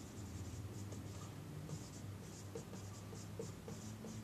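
Dry-erase marker writing on a whiteboard: a quick, irregular run of short, faint strokes as words are written, over a faint steady low hum.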